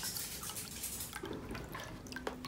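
Water running from a bottled-water dispenser's tap into a drinking glass as it fills, a steady hiss of the stream that thins about a second in.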